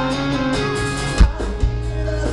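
Live rock band playing loud electric guitars and drums, heard from within the crowd. Two heavy low hits stand out, about a second in and again half a second later.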